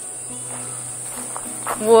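Steady high-pitched drone of insects, with a low hum beneath.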